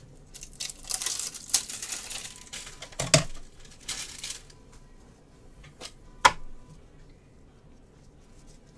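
Plastic card wrapping crinkling and tearing for the first few seconds, then a few sharp clicks, the loudest about six seconds in, as trading cards are unwrapped and handled.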